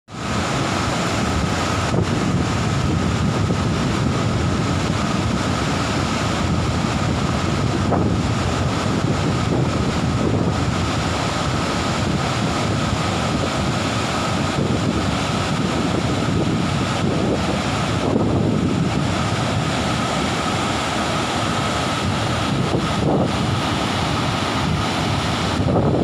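Large waterfall in flood, white water pouring over rock ledges: a steady, loud rush of falling water.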